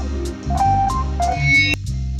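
A beat played live on a sampler: steady bass, hi-hat-like ticks about four a second and a melodic sample. The upper parts cut out briefly near the end while the bass carries on.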